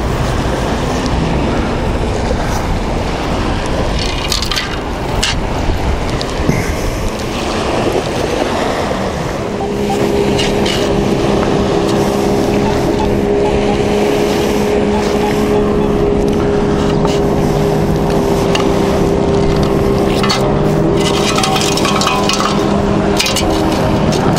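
Wind rumbling on the microphone, with a few light clicks and rattles. About nine seconds in, a steady low hum joins it and holds the same pitch.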